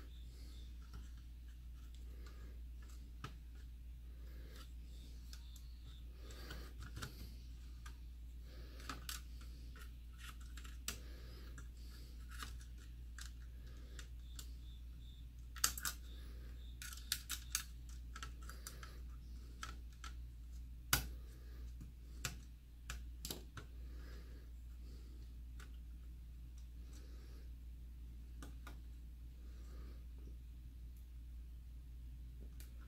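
Scattered small clicks and taps of plastic and metal as antenna wires are worked into a router's plastic case by hand and with a small screwdriver. The sharpest clicks come in a cluster from about 16 to 23 seconds in, over a steady low hum.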